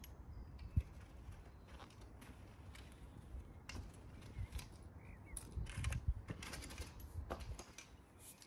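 Wide metal landscape rake dragged back and forth over loose topsoil, scraping in irregular strokes as the ground is levelled for turf, with a few dull knocks, the loudest about six seconds in.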